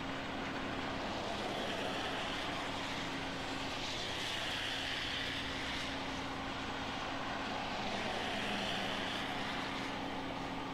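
Outdoor site noise from a live camera feed: a steady engine hum with a low held tone, and a rushing noise that swells and fades about four seconds in and again near the end, like a vehicle or aircraft passing at a distance.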